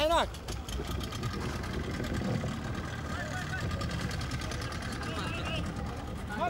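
Boat engine running steadily with a low, even drone, with faint voices calling out a few times.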